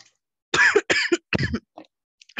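A person coughing: three loud coughs in quick succession starting about half a second in, then a fainter fourth.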